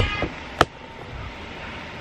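A single sharp click about half a second in, over steady low room noise, as the camera is handled and set in place.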